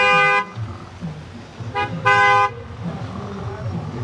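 Car horn honking three times: a half-second toot, a quick tap, then another half-second toot, over low voices.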